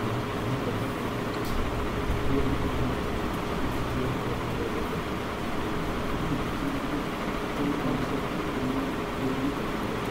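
Steady background hum and hiss of a fan or air-conditioner kind, with a faint steady tone, unchanging throughout.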